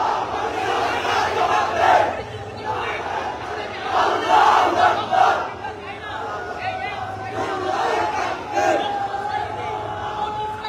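Large crowd of men shouting, many voices overlapping at once, with louder surges of shouting about two seconds in and again around four to five seconds in.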